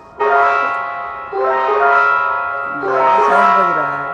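An electronic alert chime of bell-like tones, sounding three times about every second and a half, each burst fading before the next starts; an emergency alarm set off by the earthquake.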